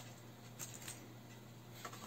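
A few faint, light clicks and taps of kitchen items being handled on a counter, over quiet room tone.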